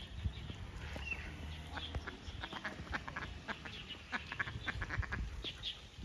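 Ducks quacking in a quick run of short calls, over a low rumble.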